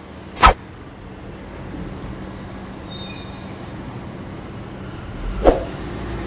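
Two sharp knocks, one about half a second in and one near the end, from a large fish and knife being handled on a plastic cutting board beside a stainless steel sink. Between them there is a steady low hum.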